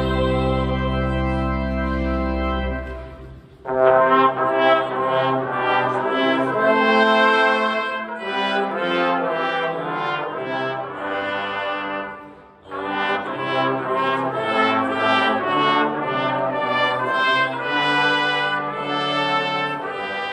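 Small brass ensemble of trumpet, tuba and saxophone playing a hymn in parts. A long held chord with a deep bass note ends about three and a half seconds in, then the next phrases start, with a brief breath break about twelve seconds in.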